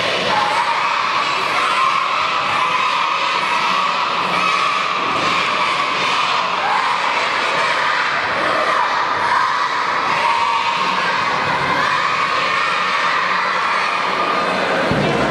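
Many children's voices shouting and cheering together without a break, a dense steady wash of high-pitched voices.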